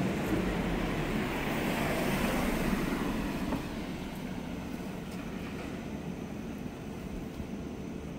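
A car passes close by and drives off, its tyre and engine noise swelling and then dropping away about three and a half seconds in, leaving a lower steady street hum.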